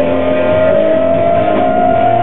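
Live rock band playing loudly, with one long held note slowly rising in pitch over the guitar and rhythm section.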